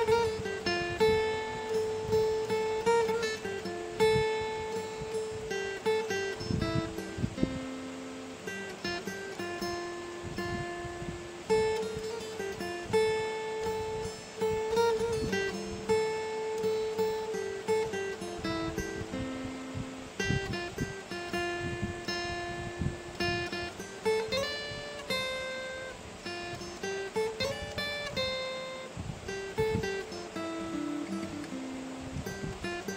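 Instrumental background music carried by a plucked-string melody, each note struck and fading, with notes sliding up and down near the end.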